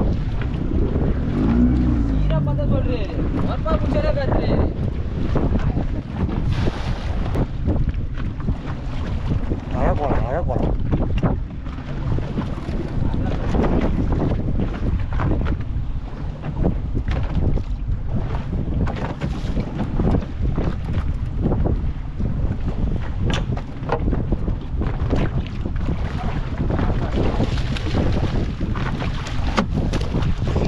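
Steady wind buffeting the microphone over open sea, with waves washing against a small fishing boat's hull; brief voices of the crew come through now and then.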